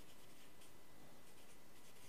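Marker pen writing on flip-chart paper: faint scratchy strokes as a word is written out.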